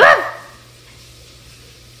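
A single short, loud dog-like bark right at the start.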